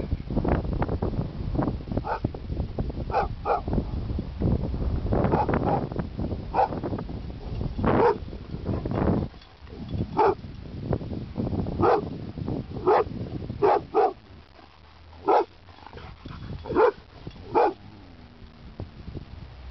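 Boxer dog barking over and over, steady barking over a low rumble in the first half, then single short barks about a second apart.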